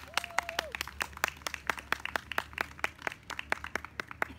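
Light applause from a small group of people: separate handclaps, several a second, irregular and thinning toward the end. A short held voice call, an 'ooh' or cheer, comes near the start.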